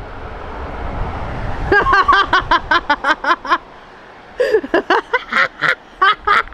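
A road vehicle passing, its rumble swelling over the first second and a half, then a woman laughing in two bouts of quick, rhythmic bursts.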